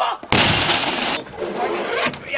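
Glass picture tube of a CRT television shattering as it is smashed: a sudden loud burst of breaking glass about a third of a second in, lasting about a second and cutting off abruptly.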